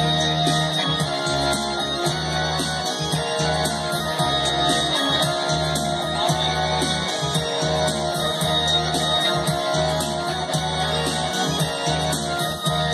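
Live band playing an instrumental intro led by acoustic and electric guitar in a steady strummed rhythm, heard through stage PA speakers.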